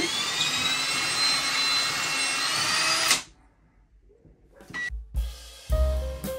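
Power drill running steadily for about three seconds while a curtain-rod bracket is fixed high on the wall by the window, then stopping abruptly. After a short quiet, background music with drums and bass comes in near the end.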